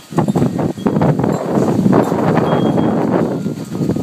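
Strong Santa Ana wind gusting through a torn gazebo canopy, the fabric roof flapping and snapping irregularly with wind rumble on the microphone. The gust comes up suddenly just after the start and stays loud.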